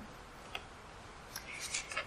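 Quiet room tone with two faint clicks, about half a second in and about a second and a half in, and a faint rustle just before the end.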